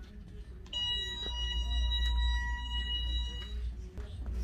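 An electronic buzzer tone sounds steadily for about three seconds, starting about a second in and cutting off near the end.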